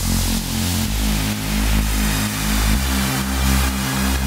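Electronic house music: a rapidly pulsing synth bassline in an even rhythm, stepping to a new note about a second in and again near three seconds.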